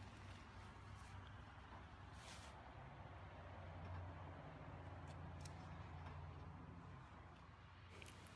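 Near silence: faint background with a low steady hum that swells a little in the middle, and a few faint ticks.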